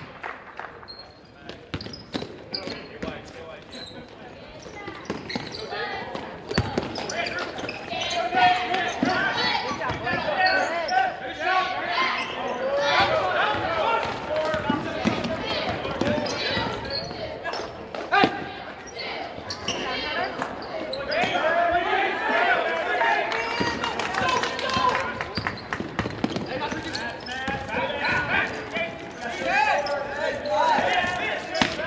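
Basketball bouncing on a hardwood gym floor during play, with a steady hubbub of players' and spectators' voices echoing in the gymnasium. The first few seconds are quieter, and the voices and bounces build from about six seconds in.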